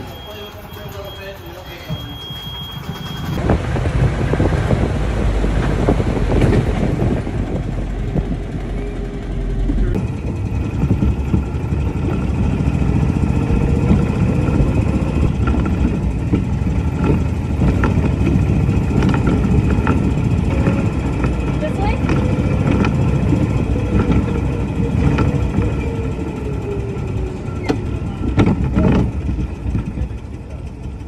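Wind buffeting the microphone and rolling noise from riding in an open golf cart, with a faint whine that rises and falls as the cart speeds up and slows.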